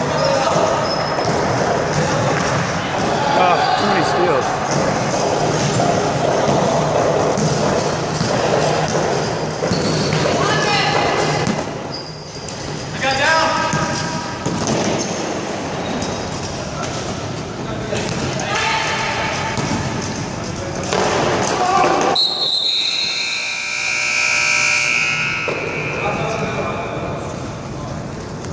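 Basketball bouncing on a wooden sports-hall floor during a unicycle basketball game, with players shouting and calling out in an echoing hall. Near the end a long steady high tone sounds for about three seconds.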